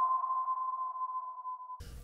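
Sonar ping sound effect: one steady pure tone that slowly fades and stops just before the end.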